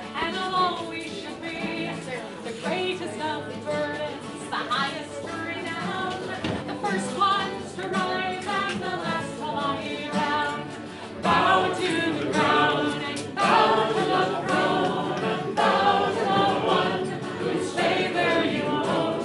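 Live singing of a folk song by several voices together, a woman's lead among them, getting louder about eleven seconds in.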